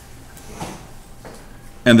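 A quiet pause with only faint, indistinct noise, then a man's voice starts speaking near the end.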